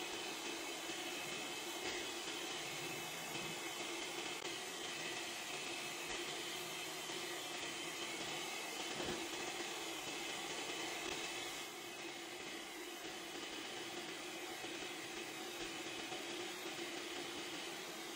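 Pet grooming stand dryer blowing steadily on low, a constant rush of air with a faint steady hum.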